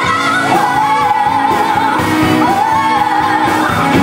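Two women singing a pop musical-theatre song live, holding long notes with vibrato, backed by a band with electric guitar.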